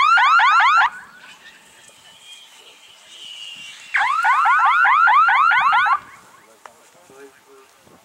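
Electronic warbling signal horn of an F3B speed course sounding twice, about four seconds apart: first a short burst of rapid rising chirps, then a longer one of about two seconds. Each burst marks the glider crossing a base line on its timed speed run.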